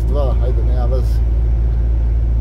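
Steady low drone of a fully loaded semi-truck's engine and tyres, heard from inside the cab while cruising on the motorway.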